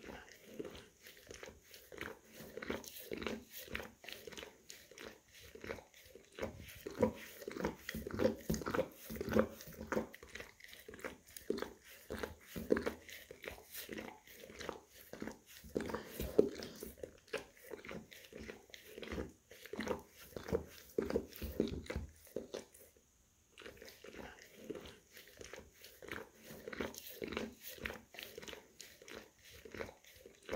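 An English cream golden retriever licking and nibbling at his own paw, heard close up: rapid wet licks and small mouth clicks, several a second, with a pause of about a second three-quarters of the way through.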